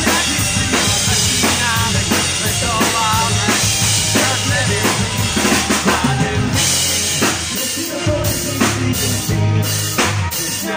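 Live rock band playing: electric guitars over a drum kit with strong bass, the kick and snare keeping a steady beat.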